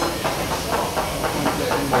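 Ballpoint pen writing on a paper label in short scratching strokes, about four a second, over a steady background hiss.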